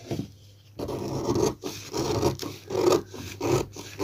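Scissors cutting through a paper pattern, a run of strokes starting about a second in.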